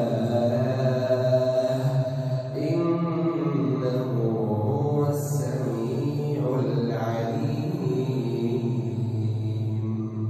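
An imam reciting the Quran aloud in the prayer, a single man's voice in long, melodic held phrases that rise and fall slowly, heard through the mosque's microphone.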